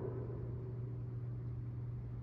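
Room tone in a pause between spoken phrases: a steady low hum with faint hiss, as the reverberant tail of a man's voice fades away at the start.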